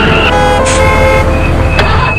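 A car horn sounding in long held tones that change pitch, over the low rumble of a car on the road.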